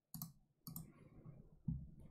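Three faint computer mouse clicks, spread over about two seconds.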